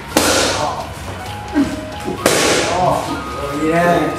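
Boxing punches smacking into focus mitts: two sharp cracks, one just after the start and one about halfway through.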